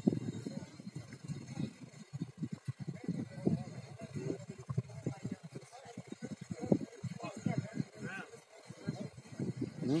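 Close, indistinct conversation: people's voices talking on and off throughout.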